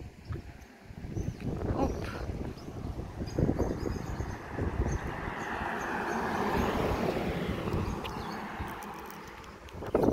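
Road noise from inside a moving car, with wind gusting on the microphone. A broad swell of noise builds, peaks and fades from about four to nine seconds in.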